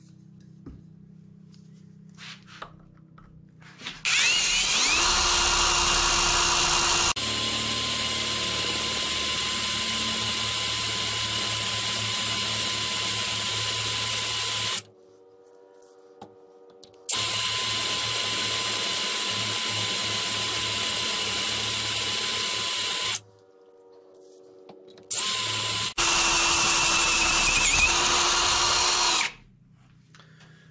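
Parkside PSBSAP 20-Li A1 brushless cordless drill boring a 13 mm hole through 5 mm steel, the largest bit it is rated for in metal. The bits are not very sharp and the work goes slowly. The motor winds up about four seconds in and runs in three long stretches with short pauses and one brief burst between them, then winds down near the end.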